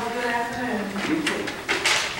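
A person speaking, in a meeting room.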